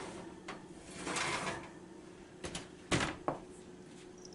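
A metal cake pan is set on an oven rack, and the rack slides in with a soft scrape. The oven door then shuts with a louder pair of knocks about three seconds in.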